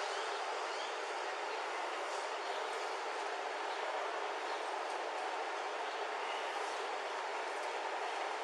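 A steady, even hiss with no words and no distinct events, unchanged throughout.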